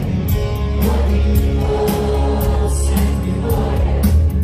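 Live rock band playing through a large concert sound system, with steady drum beats and heavy bass, and a big crowd singing along with the song.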